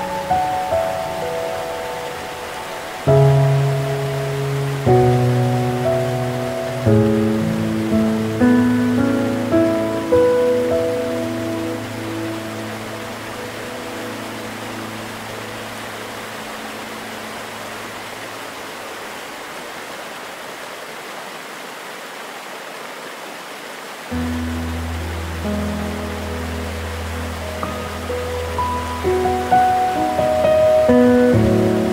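Slow, gentle piano music played over a steady rushing of waterfall water. The notes thin out and fade about halfway through, then low bass notes come back in about 24 seconds in.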